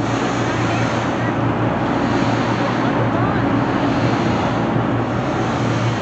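Wind buffeting the microphone on an open ferry deck, over the steady low drone of the ferry's engine.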